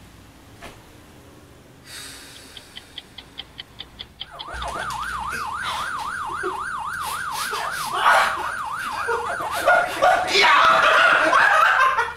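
A quick run of ticks, then a siren-like tone that warbles up and down about four times a second. Louder noisy outbursts come over it in the last few seconds.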